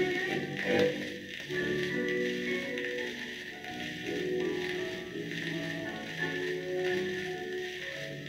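Orchestral waltz played from a 78 rpm record, with steady surface hiss and light crackle under the music.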